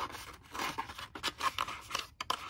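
Kraft cardstock pillow box being bent and folded by hand: stiff card rustling and scraping in a run of short crackles.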